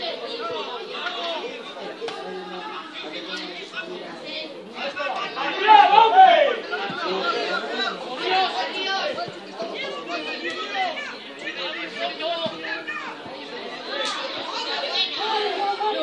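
Several people's voices talking and calling out over one another, with a loud shout about six seconds in.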